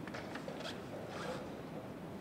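Playing-hall background with a few light clicks and a brief rasping scrape about a second in, typical of chess pieces and clocks being handled at the boards.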